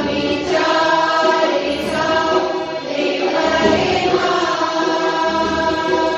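A group of voices singing a devotional prayer together, over the long, held reed tones of a harmonium.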